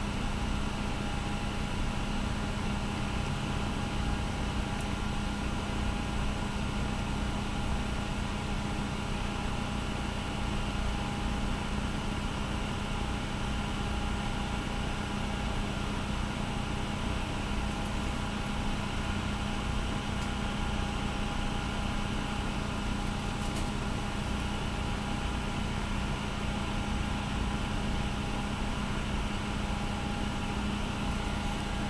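Steady background machine hum with a low rumble and a few constant whining tones, unchanging throughout.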